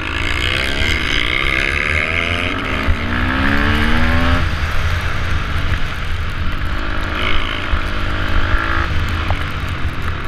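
KTM supermoto motorcycle engine heard on board, its pitch rising as it accelerates, rising again after a gear change, then falling away sharply about four and a half seconds in as the throttle closes, and running steadier after that. A constant low rumble of wind buffets the camera throughout.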